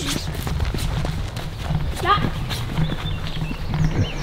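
Footsteps hurrying over grass, with low rumbling handling noise on the microphone of a moving handheld camera. A brief faint voice comes about two seconds in.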